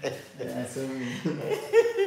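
A man chuckling as he talks.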